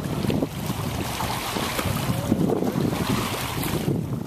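Wind blowing across the microphone: a steady rush with choppy low rumbling.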